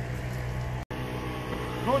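A steady low mechanical hum, broken by a momentary dropout just under a second in.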